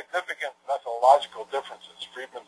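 Speech only: a lecturer talking continuously.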